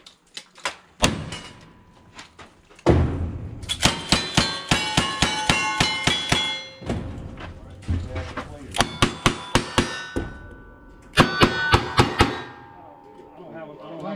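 Strings of gunshots, several a second at their fastest, during a cowboy action shooting stage, with steel targets clanging and ringing as they are hit.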